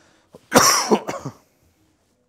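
A man coughing loudly about half a second in, one harsh burst that dies away within a second.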